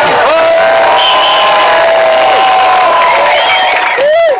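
Large crowd cheering at the end of a speech, with long held whoops from people close by over a wash of shouting and cheering.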